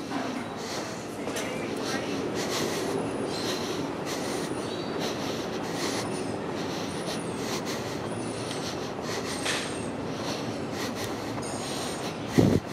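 Busy outdoor background: a steady rush of noise with indistinct voices of people nearby. Short high chirps recur every second or so.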